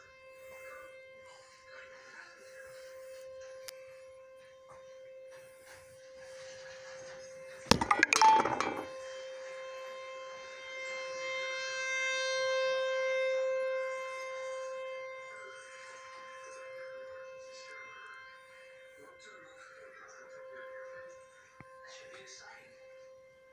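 Outdoor tornado warning siren sounding its steady wail during the monthly test, heard from indoors through a window. The wail swells louder a little past halfway and then eases off. A sudden loud clatter close by comes about eight seconds in.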